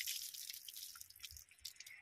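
Water from a hand pump splashing and dripping onto a concrete platform as hands are washed under it, dying away over the two seconds.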